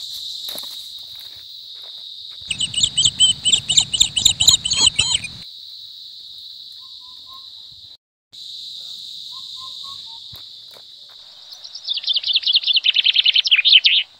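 A steady, high-pitched drone of forest insects, broken twice by a louder, rapidly pulsing call: a few seconds in, and again rising to the end. Faint short whistled bird notes sound in between.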